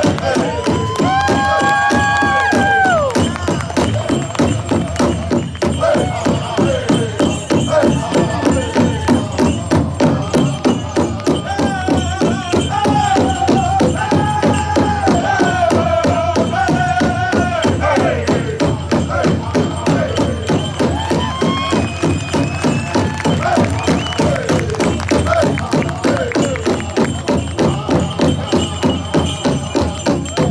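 Powwow-style drum and singing: a steady, fast beat on a big drum under a group of voices singing high held notes that slide down at the ends of phrases.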